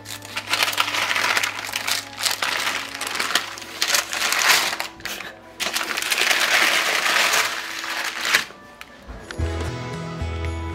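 Baking parchment paper crinkling and rustling in uneven bursts as the paper lining a baking tray is handled, stopping about eight and a half seconds in. Soft background music runs underneath.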